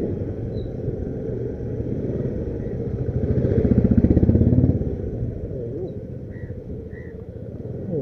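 Motorcycle engine running while the bike is ridden, its firing pulses growing louder for about a second halfway through as it accelerates, then easing back.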